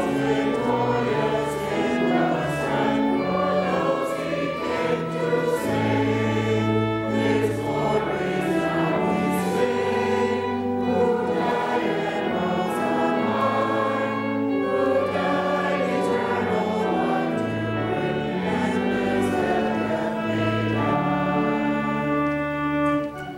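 A church choir singing sacred music in sustained chords over a slowly stepping bass line.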